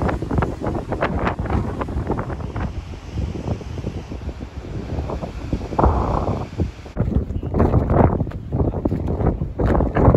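Strong wind buffeting the phone's microphone in irregular gusts.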